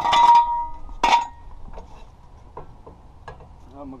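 Steel jack stand clanking as it is pulled from under the car and handled. There are two loud clanks with a ringing metallic note, one at the start and one about a second in, followed by a few light clicks.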